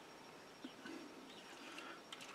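Near silence, with faint handling noise from a stripped AK-pattern rifle being lifted and turned over by hand: a light tick a little over half a second in.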